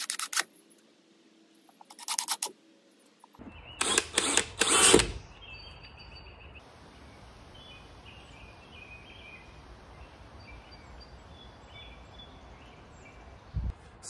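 Cordless drill driving screws into a plywood panel in several short bursts during the first five seconds, the last ones loudest. After that, steady outdoor background noise with faint bird chirps.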